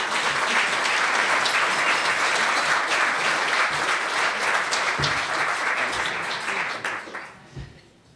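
Audience applauding to welcome a speaker. The clapping is dense and steady, then dies away about seven seconds in, with a couple of low thumps late in the applause.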